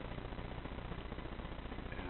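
Steady background noise: a low hum with an even hiss and no distinct events.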